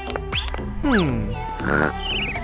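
Cartoon background music for children with comic sliding-pitch sound effects: a falling glide about halfway through and a warbling sound near the end.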